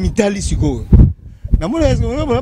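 A man speaking into a handheld microphone. About a second in, a brief low thump is louder than the voice, and a short pause follows before he goes on.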